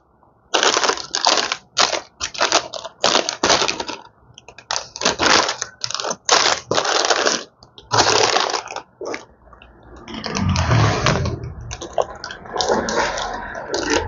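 Crinkling and rustling of plastic bags of wiring-harness adapter cables being rummaged through and lifted out of a cardboard box, in quick irregular bursts, with a longer, rougher handling noise near the end.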